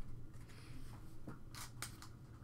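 Trading cards sliding against one another as they are flipped through by hand, with two brief swishes near the end, over a low steady hum.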